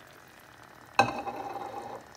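A glass jug clinks once against hard kitchenware about a second in, ringing briefly as it fades. Under it, a faint sizzle comes from the pot of curry cooking on the stove.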